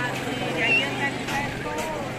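A vehicle engine humming steadily, stopping about a second in, with people's voices in the background.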